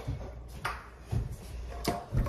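Items being handled on a kitchen counter: about three light, sharp clicks and knocks spread over two seconds, over a faint steady low hum.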